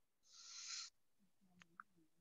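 Near silence in a small room: a soft hiss lasting about half a second, then a faint click and a very short faint tone near the end.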